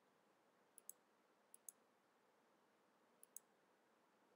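Three faint computer mouse clicks over near silence, each a quick double tick of button press and release.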